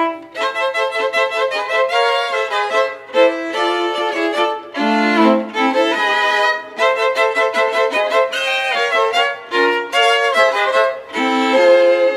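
Two violins and a viola of a string quartet playing a brisk passage of quick notes in short phrases with brief breaks between them, the cello resting.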